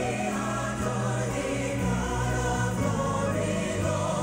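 Live gospel music: a group of singers holding chords in harmony over sustained instrumental accompaniment.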